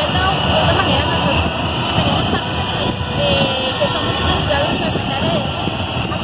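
A woman talking in Spanish over a steady low rumble.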